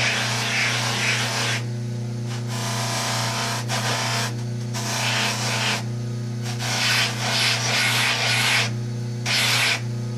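A Baldor bench motor runs with a steady hum, driving a polishing wheel. The plastic spacer of a rubber shotgun recoil pad is pressed lightly against the wheel in about five passes, each a second or so of rubbing hiss with short breaks between them.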